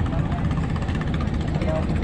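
A steady low engine rumble running evenly, with faint voices in the background.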